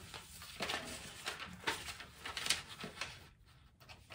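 Paper sewing pattern being handled and cut with scissors: irregular rustles and short snips, dropping away briefly near the end.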